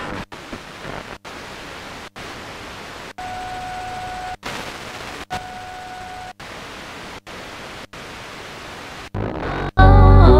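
FM inter-station hiss from an Eton G3 radio being stepped up the band between stations. The hiss breaks off for an instant about once a second as each tuning step mutes the receiver, and twice a faint steady tone sits under it. Near the end a station comes in and music starts.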